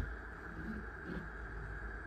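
Quiet room tone: a low steady hum under a faint even hiss, with no distinct event.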